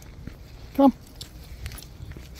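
A single short spoken command, "Come", just under a second in, over faint footsteps and a low rumble on the phone's microphone.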